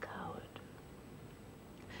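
A woman says one last word softly, close to a whisper. A pause follows with only a faint steady hiss, and a breathy sound comes at the very end.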